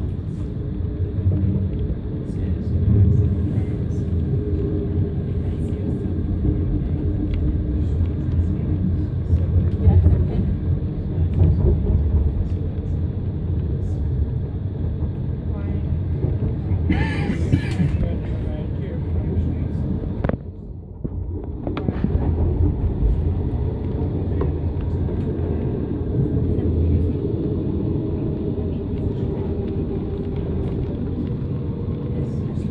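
Steady low rumble of a moving passenger train heard from inside the carriage. A brief hiss comes just past the middle, and the noise drops away briefly soon after.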